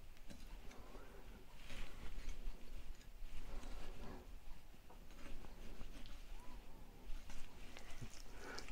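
Faint, irregular scraping and cutting as a sharp knife is worked along the thigh bone of a raw chicken thigh on a wooden cutting board.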